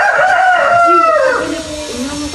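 A rooster crowing once: one long call that falls in pitch and dies away about a second and a half in.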